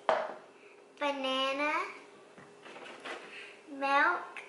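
A young child's voice saying one drawn-out word about a second in, and starting another near the end; a short knock at the very start.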